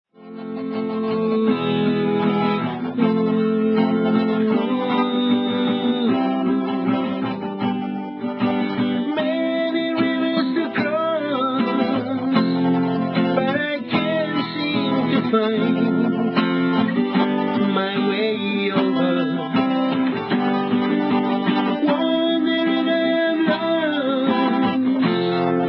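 Acoustic guitar strummed in a live reggae song, with a man singing over it. The sound fades in over the first second or so.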